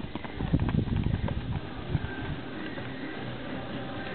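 Horse's hooves on a sand arena as it lands from a jump and canters away: a run of dull thuds, strongest in the first two seconds, then fading.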